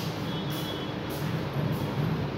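Steady low rumble with hiss, a continuous background noise without any distinct events.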